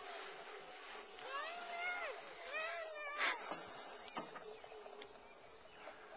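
High-pitched wordless vocalizing, likely a young child's: two drawn-out calls that rise and fall in pitch, with a sharp click just after the second.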